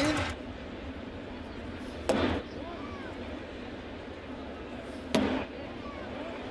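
Two sharp leather pops about three seconds apart: a pitched baseball smacking into the catcher's mitt. Underneath is a steady crowd murmur from the ballpark.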